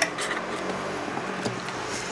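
Paper and card stock rustling and sliding as sheets are handled and pulled out of a cardboard box, with a few small taps.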